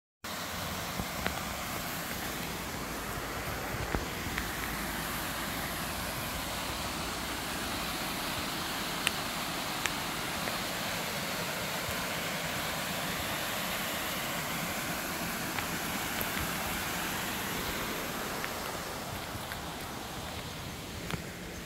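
Small waterfall cascading over rock ledges: a steady rush of falling water, easing slightly near the end, with a few sharp clicks and steps on a leafy trail.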